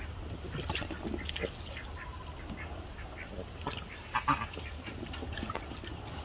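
Muscovy duck bathing in a shallow plastic kiddie pool, splashing the water in short, irregular bursts as it dips and shakes its feathers, with a louder burst about four seconds in.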